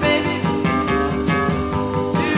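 Early-1960s rock and roll band recording playing at a steady beat, with guitar to the fore.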